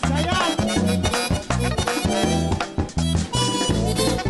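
Live merengue band playing an instrumental passage: button accordion leading over saxophones, tambora drum, drum kit and bass in a driving, even rhythm.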